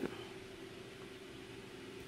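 Quiet room tone with a faint steady hum and no distinct sound events.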